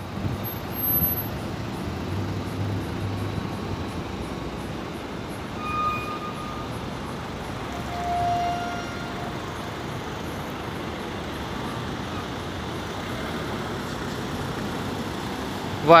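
Steady city traffic noise, an even background hum of road vehicles. A few brief faint tones rise above it about six and eight seconds in.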